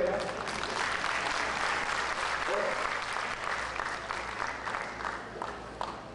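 An audience applauding, a dense patter of many hands clapping that dies away near the end.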